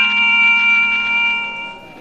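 Organ music: a sustained chord is struck and held, then fades away over under two seconds, leaving a faint background hum. It is a musical bridge between scenes.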